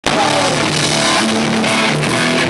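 A live rock band playing loud: electric guitar and drum kit, with a man singing into a microphone.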